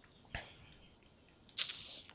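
Near silence: faint room tone with one short click about a third of a second in and a faint breathy hiss near the end.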